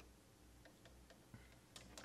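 Near silence with a few faint, short clicks: a patch cable being handled at a Eurorack modular synthesizer.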